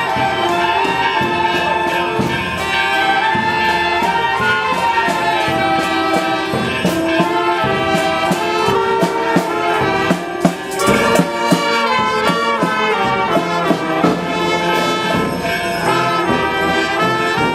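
A small marching street band playing: clarinets and brass with a sousaphone carrying the melody over steady drum strokes, with a quick run of drum hits partway through.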